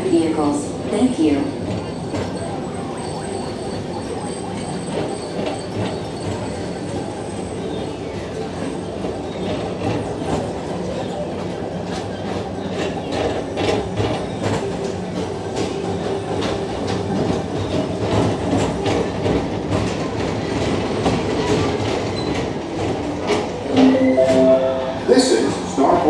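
Tomorrowland Transit Authority PeopleMover car running along its elevated track, a steady rolling rumble with a run of clicks and clacks from the track in the second half.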